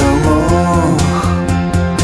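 Instrumental stretch of an alternative rock song: guitars over a steady drum beat and bass, with bending notes in the first second.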